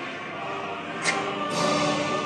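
A recorded men's military choir singing in full voice, played back in the exhibit, with a sharp click about a second in.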